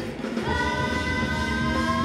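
Live rock band with singing. After a short break at the start, from about half a second in, a long note is held by the voices over the band.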